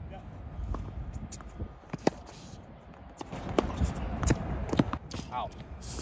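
Tennis rally on a hard court: a ball struck by rackets and bouncing, heard as a handful of sharp pocks spaced about half a second to a second apart, over wind noise on the microphone.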